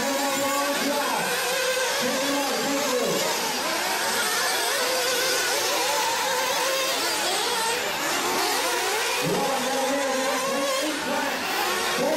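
Small nitro engines of several 1/8-scale RC buggies racing: a high whine that rises and falls in pitch as they accelerate and brake around the track, with several engines overlapping.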